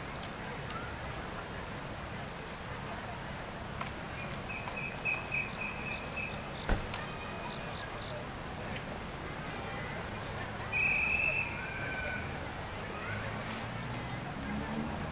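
Night insects singing: a steady high-pitched drone throughout, with two louder, lower trills, one pulsing in short beats and a shorter one later. A single sharp click about halfway through is the loudest sound.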